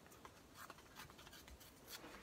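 Faint short rips and scratches of paper being torn by hand, several small tearing sounds in a row.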